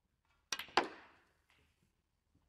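A snooker shot. The cue tip strikes the cue ball about half a second in, and a quarter second later the cue ball clicks loudly against an object ball. A faint knock follows about a second in.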